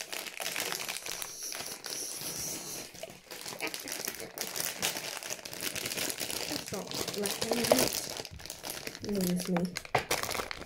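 Plastic sweet wrapper crinkling and tearing as it is pulled open by hand, with a short burst of a child's voice near the end.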